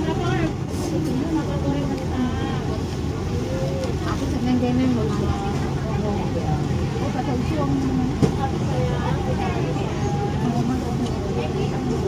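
Chatter of several people in a busy eatery, over a steady low hum, with one sharp click about eight seconds in.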